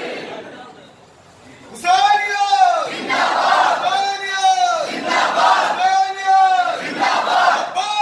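A crowd of men shouting a short phrase together, over and over, about once a second. It starts after a lull about two seconds in.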